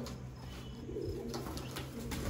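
Domestic pigeons cooing softly, one low coo from about half a second to a second in.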